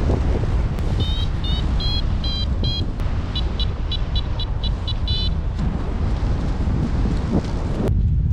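Paragliding variometer beeping: short high beeps that step up in pitch and then come faster, about four a second, for a few seconds, the sign that the glider is climbing in lift. Steady wind rushes over the microphone throughout.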